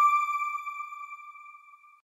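A single high electronic chime note, struck once and fading away over about two seconds before it cuts off: the closing logo sting of the news outro card.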